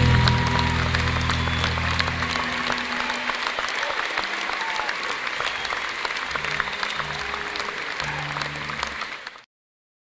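A live band's last chord rings out on electric guitar and stops about two seconds in, and the audience applauds. The sound cuts off suddenly near the end.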